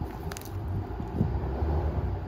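Truck engine running at low revs, pulling slowly on a chain to try to uproot the bush, with a short click about a third of a second in.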